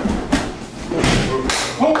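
Judoka's bodies thudding onto the tatami mat as one is thrown and taken down, several thuds with feet scuffling. A voice calls out near the end.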